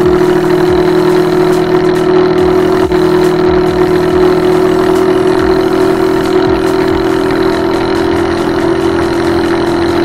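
TVS Jupiter scooter's single-cylinder four-stroke engine running through a custom-made exhaust at a steady speed while riding, its note holding one even pitch.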